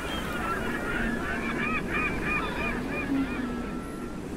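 A flock of birds calling, many short arched cries overlapping, thickest in the middle and thinning toward the end, over a steady low rushing background.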